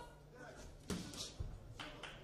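Faint voices with sharp knocks: a loud one about a second in, a dull thump shortly after, and another knock near the end.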